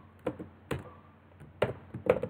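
Typing on a computer keyboard: a handful of separate keystrokes, spaced irregularly.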